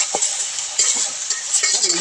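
A slotted turner scraping and stirring chicken pieces in a metal pot, with short scrapes and knocks against the pot over a steady sizzle of the meat frying.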